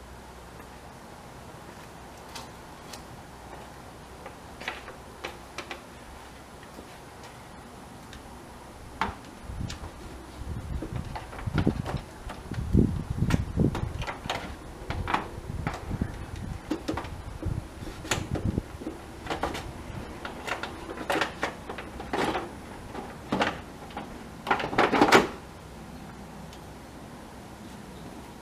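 A plastic electric radiator fan and shroud being worked down into place in a pickup's engine bay: scattered knocks, clicks and scraping of plastic on plastic. Quiet for the first several seconds, then busy, with the loudest knocks near the end.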